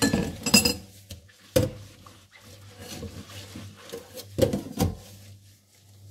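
A cut-crystal salad bowl being scrubbed with soapy rubber-gloved hands, the glass clinking and knocking against the stainless steel sink and other dishes several times between softer rubbing sounds, with two knocks close together past the middle.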